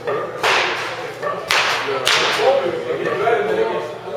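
Three sharp, whip-like cracks of batting practice in an indoor batting cage, each trailing off in a short hiss: the first just under half a second in, the next two about a second later and half a second apart.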